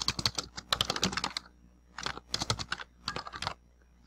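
Typing on a computer keyboard: a quick, continuous run of keystrokes for about a second and a half, then three short bursts of keys, stopping shortly before the end.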